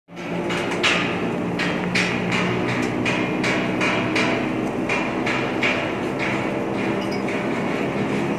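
Mud rotary water-well drilling rig running its rotary head at high speed on a test run: a steady mechanical hum from the drive with an irregular clatter of metal knocks, about two to three a second.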